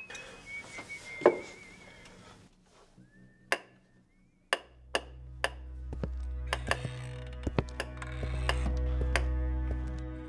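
Whistling that wavers in pitch for the first two seconds, with a sharp knock about a second in. Then a telegraph key is tapped in irregular sharp clicks, over a low, steady film score that comes in about halfway.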